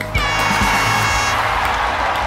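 Canned crowd cheering and applause sound effect, bursting in just after the start with a held cheering tone in its first second, then a steady wash of clapping. Background music plays underneath.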